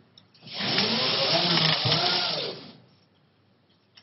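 Whirring of a small electric motor for about two seconds, its pitch rising and then falling, cutting off before the end.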